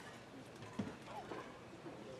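Faint open-air baseball field ambience: distant voices and one sharp knock a little under a second in.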